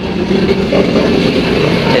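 Steady motor-vehicle engine noise from road traffic.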